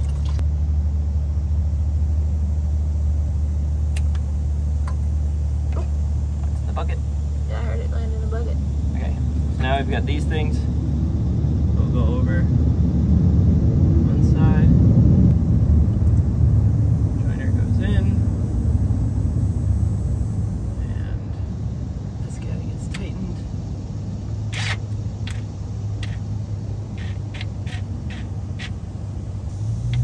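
Steady low hum of an idling engine, swelling louder in the middle, with scattered sharp clicks of hand work.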